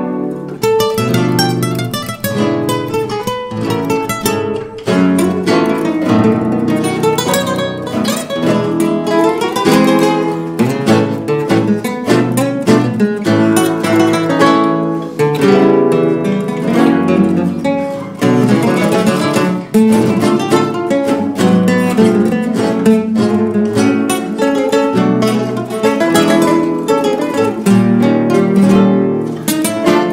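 A tango played on three classical guitars: plucked melody lines over bass notes and strummed chords, continuing without a break.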